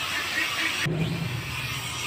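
Small toy drone's propellers buzzing with a steady hiss and hum. About a second in the sound changes abruptly, and a lower steady hum carries on after.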